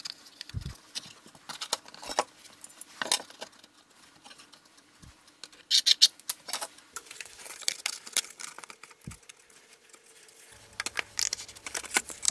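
Scattered light clicks, taps and rattles of thin plywood pieces and a steel rule being handled and set in place on a workbench, with a busier cluster of clicks about six seconds in.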